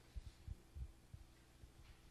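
Faint, irregular low thumps over a steady electrical hum, the handling noise of a microphone being picked up and moved.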